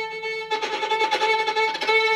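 Violin holding one bowed note, then from about half a second in the tone turns jittery and broken as the bow bounces uncontrollably on the string, the unwanted bounce of a shaky bow.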